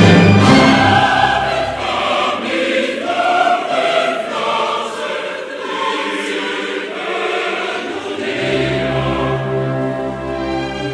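Choir singing with orchestra in a classical cantata. A loud, low orchestral passage fades in the first second, the voices carry on over a thin accompaniment, and the low orchestra comes back in near the end.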